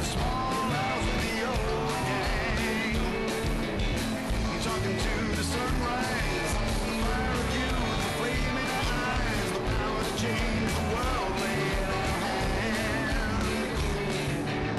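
A rock band playing a song: a singing voice over guitar and steadily hit drums.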